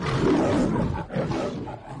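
A loud, rough roar in two long swells, the second shorter than the first.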